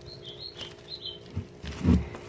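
A bird chirps a few short, high notes during the first second, over a faint steady hum. Near the end comes a low bump and rustle as the plastic-wrapped cone of cotton twine is picked up and handled.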